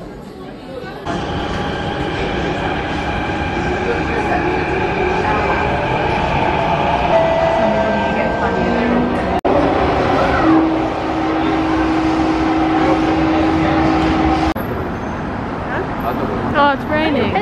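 Running noise inside a Singapore MRT train carriage, starting suddenly about a second in: wheels on rail under an electric whine that rises in pitch as the train gathers speed. Later a steady whine holds for several seconds, and the sound cuts off shortly before the end.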